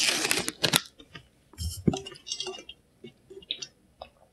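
A plastic snack wrapper crinkling briefly as it is set down, then a light knock and small clicks from handling a stainless steel tumbler with a straw.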